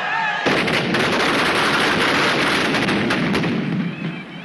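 Firecrackers in burning effigies going off in a dense, rapid crackle of many small bangs, starting suddenly about half a second in.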